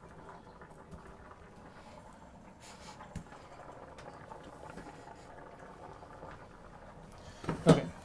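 Quiet kitchen background with a few faint clicks, then a couple of sharp clattering knocks near the end.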